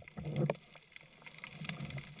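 Underwater sound through an action camera's waterproof housing: muffled water movement with scattered sharp clicks and a louder knock about half a second in, as a speared sea bass struggles on the spear shaft.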